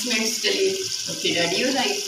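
Chicken and masala gravy bubbling and sizzling in a pot as it is fried down, with a person's voice talking over it.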